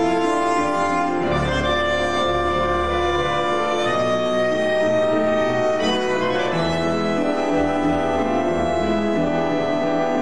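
Tango ensemble playing: a violin carries a melody in long held notes over bandoneon and double bass.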